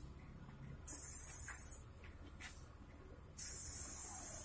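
Compressed-air gravity-feed spray gun spraying clear coat onto a motorcycle fuel tank in two bursts of hiss, each about a second long, starting and stopping abruptly as the trigger is pulled and released.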